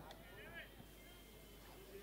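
Near silence in a gap in the commentary, with a faint, brief trace of voice about half a second in.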